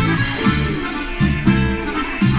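Live dance band playing an instrumental passage, with accordion, guitars, keyboard and drums over a steady bass line.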